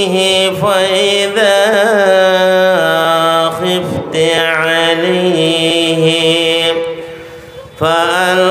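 A man's voice chanting a sung, melodic recitation into a stage microphone, holding long notes that waver and glide in pitch. It dips briefly near the end before the next phrase.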